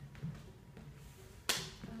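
A single sharp snap about one and a half seconds in, followed by a loud burst of laughter at the end.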